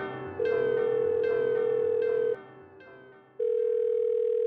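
Telephone ringback tone of an outgoing call: a steady, slightly wavering tone heard in two rings of about two seconds each, the first starting about half a second in, the second near the end. Decaying piano notes of the background score play under the first ring.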